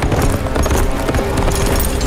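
A horse galloping, its hooves beating quickly, over music.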